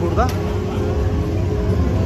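Street traffic: a steady low rumble of motorbike and car engines, with a thin steady hum from about half a second on.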